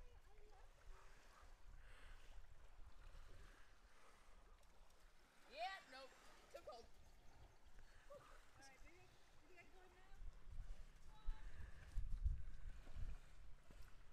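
Faint distant voice calls and exclamations carried across calm lake water. A low wind rumble on the microphone builds over the last few seconds.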